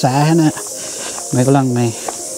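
A man's voice speaking two short phrases over a steady high-pitched hiss.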